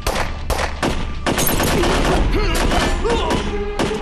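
Gunfire in a firefight: a few single shots, then a dense volley of rapid shots about a second in, and one last shot near the end.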